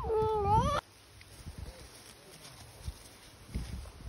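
Alpaca humming: one high, wavering hum in the first second that sags and then rises in pitch before cutting off sharply.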